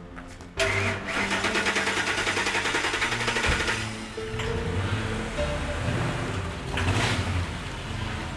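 Background music over a fast rattling mechanical run of about three seconds, starting about half a second in, which fits an SUV engine being cranked and started, then running.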